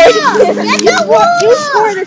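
Several girls' voices: excited calls and chatter, opening with a long high cry that falls in pitch just after the start.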